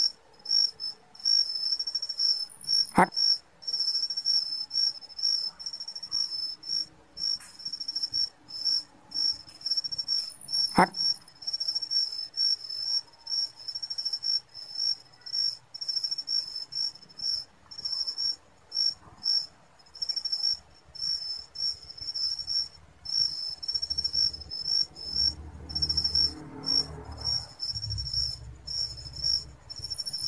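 Night insects trilling continuously in a high, rapid pulsing chirp, with two sharp clicks about three and eleven seconds in.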